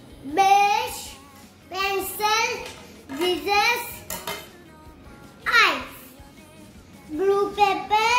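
A young child's high-pitched voice in short sing-song phrases with pauses between, including one long falling swoop of the voice a little past halfway.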